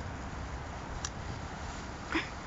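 Faint, steady background hiss and low rumble, with a single short click about a second in.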